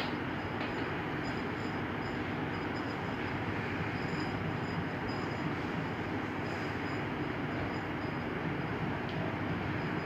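Steady background hum and hiss of room noise, with a small click right at the start.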